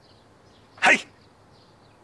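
A single short, sharp burst of a man's voice, a sneeze-like exhalation, a little under a second in.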